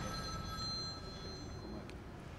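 Faint room tone in a pause in speech, with a thin, steady high-pitched whine that fades out about a second and a half in and a faint click near the end.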